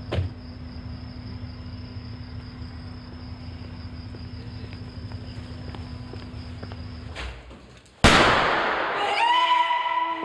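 A steady low hum with a short click at the start. About eight seconds in there is a sudden loud bang, followed by high wavering pitched sounds.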